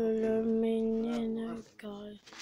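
A person's voice holding one steady sung note for about a second and a half, then breaking off, with a brief vocal sound near the end.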